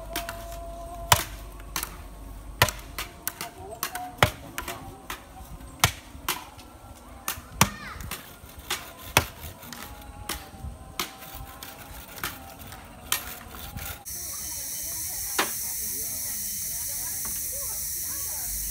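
Irregular sharp knocks of a blade chopping bamboo, about one or two a second, some louder than others. About fourteen seconds in the knocking stops suddenly and a steady hiss takes over.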